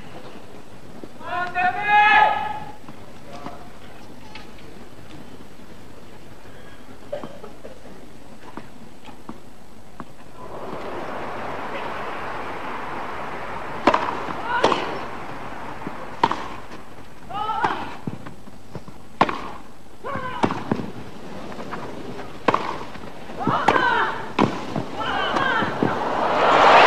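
Tennis rally: rackets hitting the ball back and forth, a dozen or so sharp hits in the second half, with brief crowd voices between them. Crowd murmur comes up just before the first hit.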